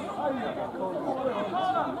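Several men's voices calling and chattering at once during a football match, overlapping throughout, with a shout of "keep the ball" right at the end.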